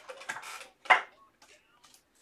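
Light clicks and taps of items being handled on a tabletop, with one sharper tap about a second in.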